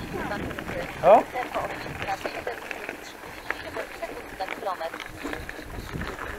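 Bicycle rolling over a gravel track: tyres crunching, with scattered clicks and rattles from the bike and wind on the microphone. A short, loud, rising vocal sound comes about a second in.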